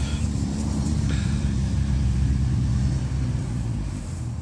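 A motor vehicle's engine running, a steady low rumble that eases off near the end.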